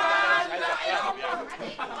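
Several men shouting and talking over one another in a scuffle, with a loud held yell at the start.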